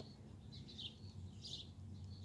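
A small bird chirping faintly: a few short high chirps, about one every half second.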